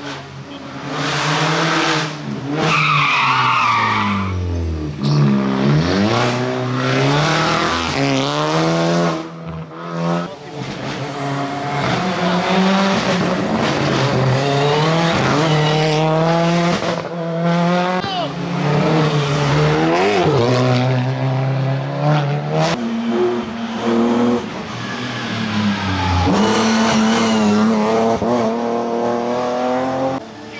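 Race cars on a hillclimb stage passing one after another at full throttle, engines revving hard and dropping in pitch at each gear change and braking point. A brief high squeal comes about three seconds in.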